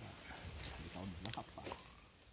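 Faint voices of people talking in the background, with a few light clicks, fading out near the end.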